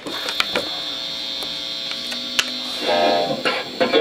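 A steady electrical hum, with a few sharp clicks and knocks from handling, then, about three seconds in, the first notes of an electric guitar.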